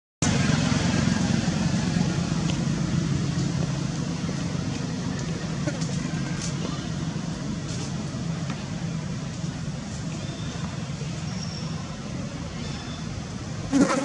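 Steady low rumble of background noise that fades slightly over time, with a few faint clicks and one short, louder sound near the end.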